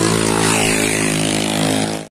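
Motorcycle engine idling steadily at a standstill, with a high hiss over it.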